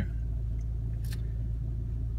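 VW Mk6 Golf R's turbocharged 2.0-litre four-cylinder idling steadily at about 830 rpm, a low rumble heard from inside the cabin.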